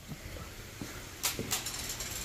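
Faint sound of water starting to run into an empty acrylic aquarium as it begins to fill, with a couple of sharp ticks or splashes about a second and a half in.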